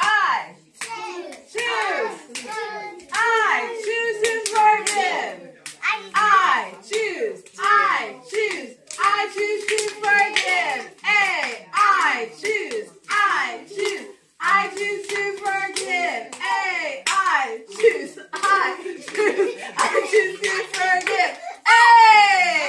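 Young children's high voices chattering and calling out excitedly, mixed with many sharp hand claps and slaps from a hand-clapping game.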